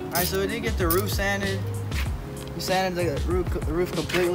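A man's voice talking over quiet background music.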